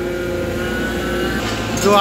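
Excavator's diesel engine running steadily, a low hum with a faint whine from its hydraulics.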